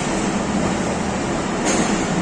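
Passenger coaches of an arriving train rolling slowly past along the platform: steady rumble of wheels on rail, with one sharp wheel clack near the end.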